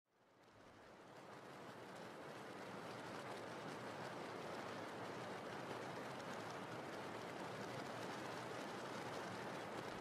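Steady rain falling, fading in over the first couple of seconds and then holding at an even, quiet level.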